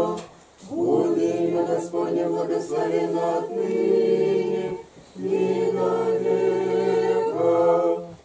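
A small Orthodox congregation of men and women singing a liturgical chant unaccompanied, in held chords. There are three phrases, with short pauses about half a second in and about five seconds in.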